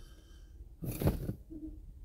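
A man's short breathy vocal sound about a second in, followed by a faint brief low hum, against quiet room tone.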